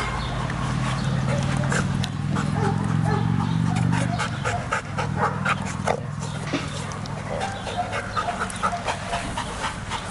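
A dog panting, with a steady low hum underneath that fades out about eight seconds in.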